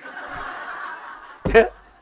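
A man laughing into a microphone: breathy, hushed laughter for about a second, then a louder burst of laughter about one and a half seconds in.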